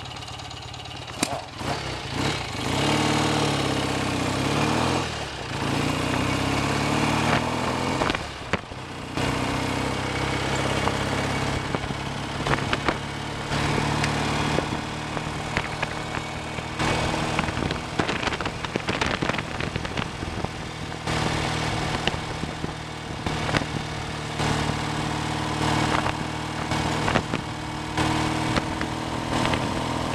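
BSA A65 650 cc parallel-twin engine, freshly rebuilt and being run in, pulling away: the revs rise twice with short dips at the gear changes over the first ten seconds or so, then the engine runs at a steady cruise. Wind rush on the bike-mounted microphone runs under it.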